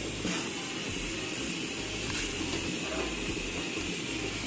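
Steady hiss of a large pot of chicken, broth and rice cooking on a gas burner, with a faint knock or two as a ladle stirs it.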